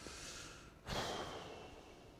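A man breathing close to a clip-on microphone during a pause in speech: a soft breath, then a sudden louder breath just before a second in that tails off.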